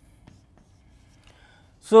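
Faint chalk strokes on a blackboard as letters are written.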